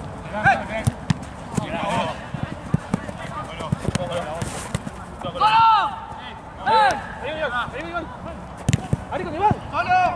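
Football players shouting and calling on the pitch, with several sharp knocks of the ball being kicked; the loudest shouts come a little past the middle.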